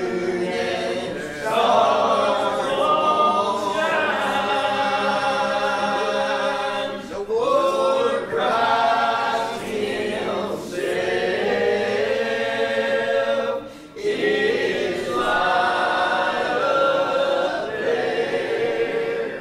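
A group of voices singing a hymn together, in long held phrases with short pauses between them.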